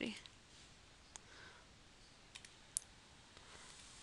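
A few faint, scattered clicks of a computer keyboard and mouse over a low hiss, the sharpest one a little past halfway, as numbers are typed into a text editor.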